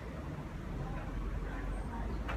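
Steady low rumble of outdoor city-street background noise, with no distinct sound standing out.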